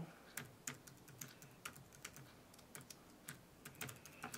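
Faint typing on an external Logitech keyboard: irregular key clicks, a few per second, as an email address is entered.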